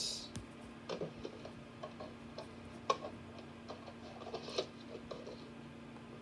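Faint, irregular small clicks and brief rustles, a few times a second at most, over a steady low hum.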